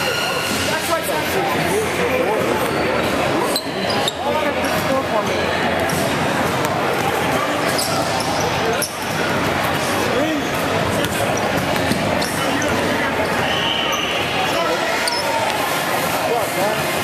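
Basketball bouncing on a hardwood gym floor with short, irregular knocks as players dribble and pass. Underneath is a steady babble of many voices echoing in a large gymnasium.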